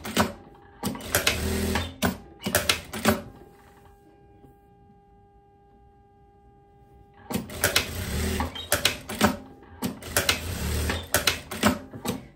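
Jack industrial straight-stitch sewing machine stitching a side seam through linen in stop-start runs for about three seconds. It pauses for about four seconds, then stitches again in runs for about four more seconds.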